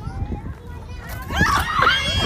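Children's voices shouting and chattering, high-pitched, growing louder about a second and a half in.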